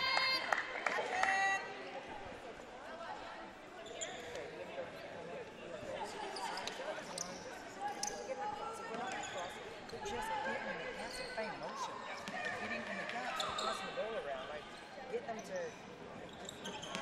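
A basketball bouncing on a hardwood court in a gym, with occasional sharp knocks, as a player takes free throws. Voices of players and spectators chatter in the hall underneath.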